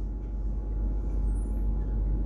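Steady low background rumble and hum with no distinct event: room noise on the recording in a pause between spoken phrases.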